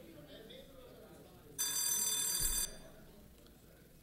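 An electronic signal tone sounds once, held for about a second, from the council chamber's electronic voting panel as it opens for members to register to speak on a bill.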